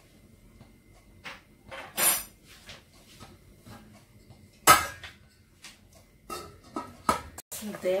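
Scattered metallic clinks and knocks of a utensil against a stainless steel cooking pot, the loudest one about halfway through.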